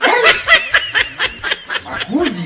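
A person laughing in a fast run of high-pitched pulses, about five or six a second, starting suddenly and loudly.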